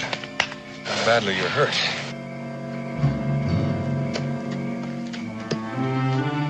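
Orchestral background score with sustained held notes and chords. About a second in, a brief wavering cry stands out over the music.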